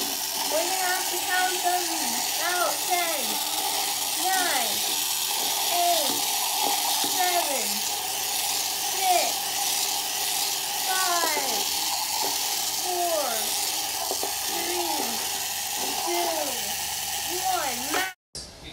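Small electric motors of toy Hexbug BattleBots whining steadily during a fight, with a hiss and repeated swooping glides in pitch that rise and fall about once a second.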